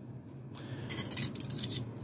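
Three metal throwing knives clinking and jingling against each other as they are picked up, a quick run of light metallic clicks in the second half.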